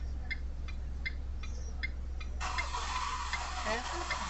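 Car's turn-signal flasher ticking steadily inside the cabin, about two to three ticks a second. About two and a half seconds in, a steady rushing hiss joins it.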